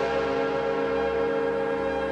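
Electronic house music: a sustained chord of steady synthesizer tones held over a low bass.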